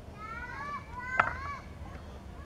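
Children's voices calling out in a few high, drawn-out, arching shouts, with one sharp knock about a second in.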